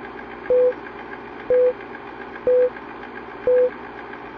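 Film-leader countdown sound effect: a short beep once a second, four times, over a steady film-projector rattle with fast, faint ticking.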